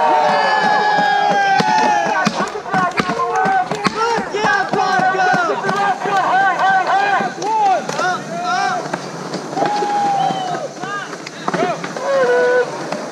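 Several young voices shouting and calling over one another, with scattered sharp clacks of skateboards hitting concrete.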